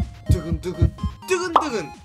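An edited 'dugeun dugeun' heartbeat effect: low thumps under a short repeated pitched phrase over background music, stopping a little over a second in. It is followed by a quick falling-pitch cartoon whistle.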